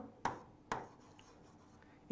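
Marker writing on a board: two short strokes within the first second, then faint room tone.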